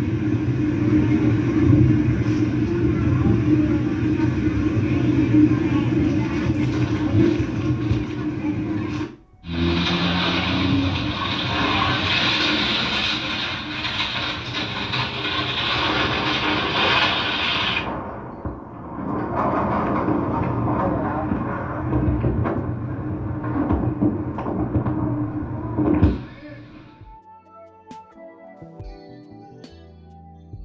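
Steady rush of fast-flowing floodwater, noisy and unclear as recorded by a phone, broken by abrupt cuts about nine and eighteen seconds in. Music comes in near the end.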